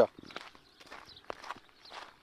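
Faint, irregular footsteps on a dirt road.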